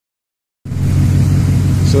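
Ford 5.4 Triton V8 in a 2004 F-150 idling steadily, a low even rumble that cuts in about half a second in.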